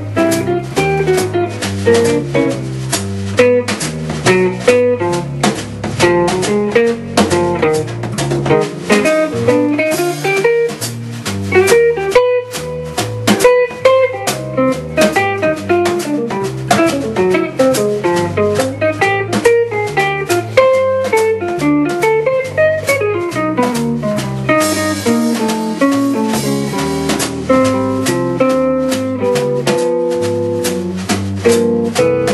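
Jazz guitar trio playing: a Gibson L5 archtop guitar over electric bass and drum kit.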